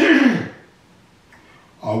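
A man clearing his throat once: a short, loud, gruff sound that falls in pitch and is over within about half a second.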